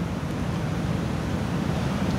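Steady low rumble with a fainter hiss, unbroken and without words: the room and background noise picked up by the preacher's microphones.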